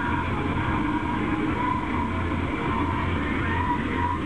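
Steady road and engine noise of a car moving along a highway, heard from inside the cabin, with an even low hum and no breaks.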